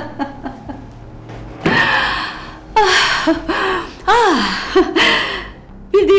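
A woman laughing: a quick run of short chuckles at the start, then several loud, breathy bursts of laughter.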